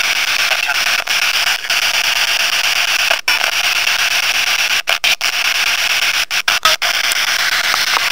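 Steady hiss of radio static, cut by several brief, sudden dropouts around the middle and again about two-thirds in. A faint voice in the static is read by the uploader as 'not this time cuz they're sleeping'.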